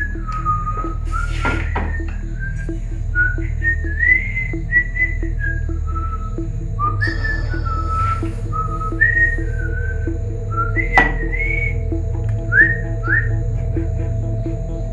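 A man whistling a tune, short notes sliding up and down, over background music with a low drone and a steady ticking pulse.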